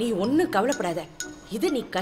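Voices speaking film dialogue, with a light metallic clink about halfway through.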